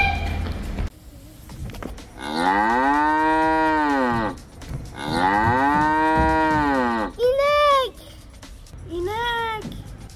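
Cow mooing: two long moos that rise and fall in pitch, each about two seconds, followed by two shorter moos.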